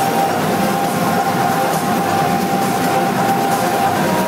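Loud, steady live theatre-show sound: a sustained droning tone over a dense wash of noise, with no clear beat or pause.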